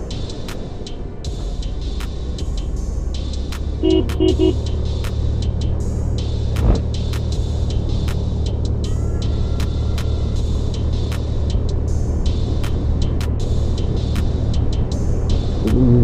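Suzuki Access 125 scooter's single-cylinder engine running steadily on a climb, with a drone of engine and wind noise. About four seconds in, a horn gives three short toots.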